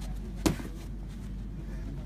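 A side kick landing: one sharp smack of impact about half a second in.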